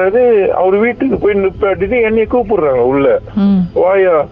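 Speech only: one person talking without pause, the sound cut off above the lower treble like a phone line or radio broadcast.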